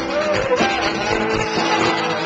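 Live rock band playing at full volume: electric guitars strumming, with a melody line bending in pitch above them.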